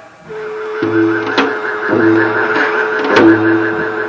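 Korean traditional dosalpuri dance music: a held, wavering melody line with a higher pulsing line above it, repeating low notes, and sharp drum strokes about every second and a half.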